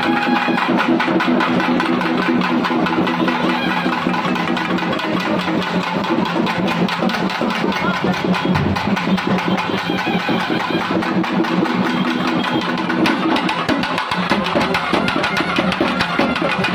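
Traditional Tamil temple-festival drum band playing fast, dense drum strokes. Under the drumming is a steady, buzzy drone that drops out for a few seconds in the middle.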